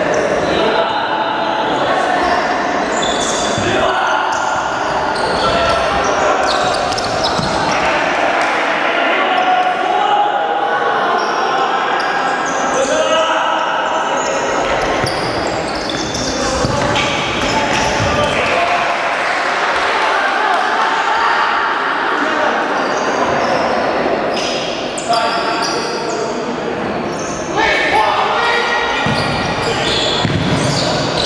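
Sounds of an indoor futsal match in a large hall: indistinct voices of players and spectators echoing, with the ball being kicked and bouncing on the wooden court, a couple of sharper knocks near the end.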